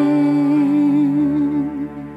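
A woman singing solo into a microphone, holding one long note with a slight waver over a steady accompaniment; the note fades away near the end.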